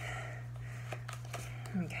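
Tarot cards being shuffled by hand: soft sliding rustles with a few light clicks, over a steady low hum.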